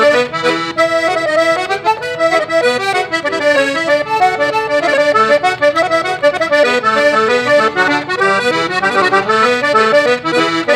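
Diatonic button accordion playing an Irish reel solo: a fast, continuous run of melody notes over lower bass and chord notes.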